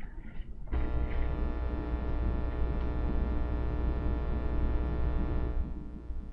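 A steady electrical hum with a stack of even overtones, strongest in its low bass. It starts suddenly under a second in and stops near the end.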